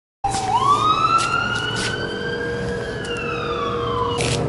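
Emergency vehicle siren wailing: after a moment of silence its pitch climbs slowly for about two seconds, then falls away, over steady traffic noise.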